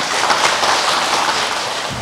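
Audience applauding, a steady round of clapping that eases slightly toward the end.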